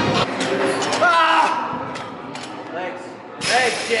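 People shouting encouragement in a large, echoing gym hall, with a louder call about a second in and more shouting near the end. Background music cuts off just after the start, and there is a sharp knock shortly before the last shouts.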